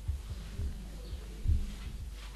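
A few soft low thumps, the loudest about one and a half seconds in, over a steady electrical hum from the sound system: knocks picked up by the microphone while the board in front of it is written on.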